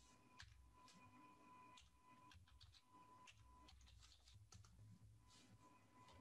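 Faint computer keyboard typing: irregular keystrokes and clicks, several a second, over a low electrical hum and a thin steady tone.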